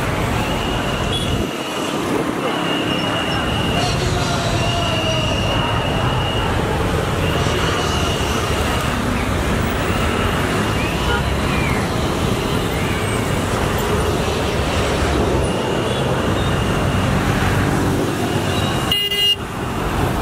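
Busy road traffic, engines running, with a high-pitched vehicle horn tooting several times, each toot about a second long.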